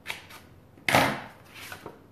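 Scissors snipping a short slit through two stacked paper petals: a few sharp snips, the loudest about a second in, with softer paper sounds near the end.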